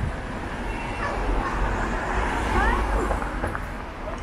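City street ambience at a busy intersection: a steady low rumble of car traffic passing, with the indistinct chatter of pedestrians and a few short rising calls or voices about halfway through.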